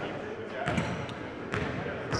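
A basketball bouncing twice on a gym floor, less than a second apart, under indistinct voices.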